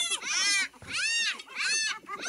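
Hyenas fighting, heard through a phone's speaker: a string of high calls, about three in two seconds, each rising and then falling in pitch.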